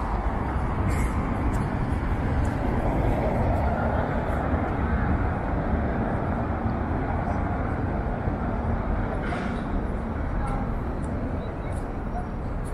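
Outdoor city ambience: a steady rumble of traffic with indistinct voices of passers-by.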